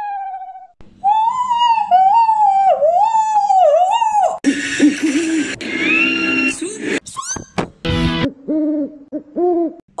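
Owl hoots: a run of wavering hoots in the first few seconds, then a noisier stretch with a rising whistle-like tone, then shorter hoots near the end.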